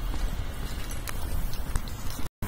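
Footsteps of a person walking on a paved street, faint light taps over a steady low rumble on the camera's microphone.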